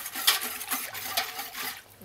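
Wire whisk stirring brine in a stainless steel stockpot to dissolve salt and brown sugar: liquid swishing, with a few faint taps of the whisk against the pot. It dies away shortly before the end.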